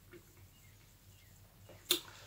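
Near silence between spoken phrases, broken just before the end by one brief, sharp mouth click from the speaker as he readies to speak again.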